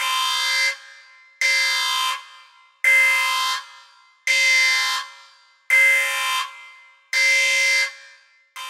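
An alarm buzzer sounding in six evenly spaced blasts about 1.4 seconds apart, each a harsh, buzzy tone lasting about two-thirds of a second and ending in a short fading tail.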